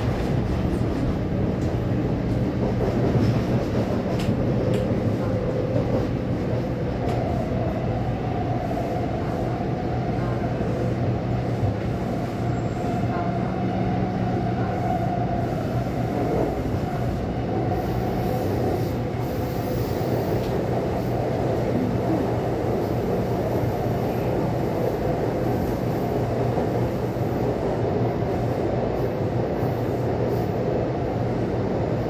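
Taipei Metro C301 train with a retrofitted propulsion system, heard from inside the car while running: a steady hum from the traction motors over wheel and rail noise. A higher whine holds for several seconds in the middle.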